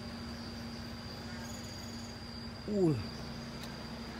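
Steady high-pitched insect call over a low steady hum in the forest background, with a short spoken sound about three seconds in.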